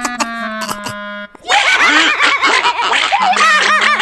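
Light cartoon background music with a held low note that breaks off about a second in. Several cartoon character voices then burst out together in wordless, wavering vocal sounds, with the music's low note returning under them near the end.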